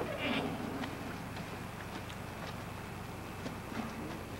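A short, distant human shout just after the start, then faint scattered clicks and knocks over a steady low hum.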